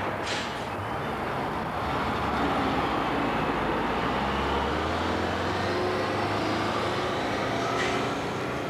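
Coach bus driving off: a steady low engine rumble with road noise, and a brief hiss just after the start.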